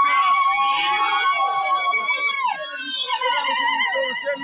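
Several women's voices giving high, long-held cries that overlap, breaking off partway through, then a new wavering, trilling cry near the end.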